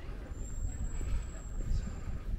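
City street background noise: a steady low rumble of traffic, with a thin high whine for about a second and a half in the middle.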